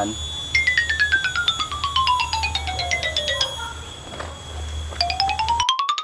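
A comic sound effect edited into the soundtrack: a quick run of short, tinkly beeping notes stepping down in pitch over about three seconds. After a pause, a shorter run steps back up near the end.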